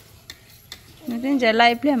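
A few faint clicks and scrapes of metal spoons on plates of rice, then a person speaking from about a second in.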